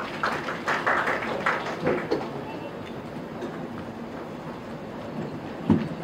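Hall ambience with low voices and scattered short clicks, busiest in the first two seconds, then a single louder thump near the end.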